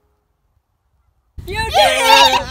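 Silence for over a second, then young voices suddenly break into loud, high, excited shouting together.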